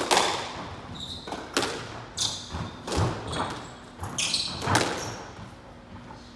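Squash rally: the ball is struck by rackets and smacks off the walls and floor, about six sharp hits over five seconds, each echoing in the enclosed court. The hits stop about a second before the end.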